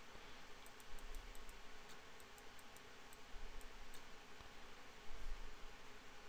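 Computer mouse clicking: about a dozen faint, quick clicks, at times several a second, mostly in the first four seconds, over a faint steady hiss.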